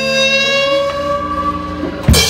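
Electric guitar, a Squier Stratocaster, played through a small amp and holding sustained notes that ring on and slowly fade, with a new lower note coming in about halfway.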